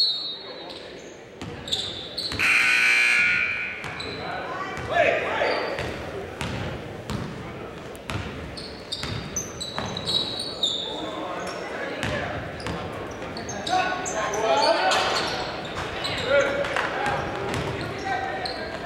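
Live basketball game sound in an echoing gym: the ball bouncing on the hardwood floor, sneakers squeaking, and players and coaches calling out.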